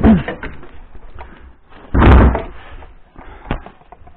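A single loud thump, about two seconds in, during a near fall, with a sharp click shortly after.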